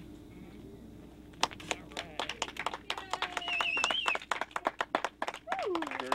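A small group clapping, starting about a second and a half in as the ceremonial ribbon is cut, with voices cheering over it.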